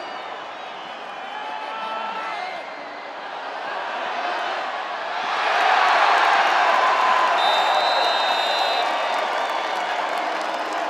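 Football stadium crowd, a low steady noise that swells suddenly into loud cheering about five seconds in as the scoring catch is made. A thin high tone sounds briefly over it a few seconds later.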